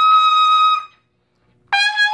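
Trumpet, played on a Warburton mouthpiece, holding a high note that fades out a little under a second in. After a short silence a new, lower note is struck sharply near the end.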